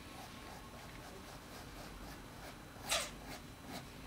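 Fine-tip Faber-Castell artist pen scratching on sketchbook paper in quick short strokes while drawing hair, faint, with one louder stroke about three seconds in.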